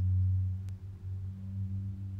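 A steady low hum-like tone with a fainter overtone above it, loudest in the first half second and then wavering slightly in level.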